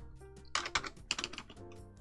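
Typing on a computer keyboard: a quick scatter of soft key clicks, with a faint steady tone underneath.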